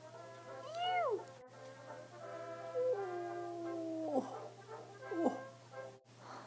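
Soft background music under a few wordless vocal sounds: a short rising-then-falling glide about a second in, a longer held note that steps in pitch and drops away around the middle, and a brief falling glide near the end.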